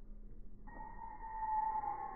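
Small brushless DC outrunner motor, driven by its electronic speed controller, starting to spin about half a second in and running with a steady high-pitched whine whose main tone drifts slightly lower.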